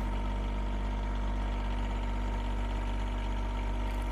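John Deere 1025R compact tractor's three-cylinder diesel engine idling steadily.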